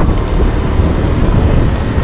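Steady wind rushing over a helmet-mounted action camera's microphone while riding, with the running of a Honda Click 125i scooter's single-cylinder engine and road noise beneath it.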